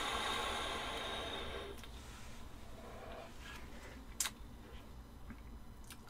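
A long draw through a Limitless RDTA vape tank on a fired coil: a steady airflow hiss with coil sizzle that fades out about two seconds in. A soft exhale and a couple of small clicks follow.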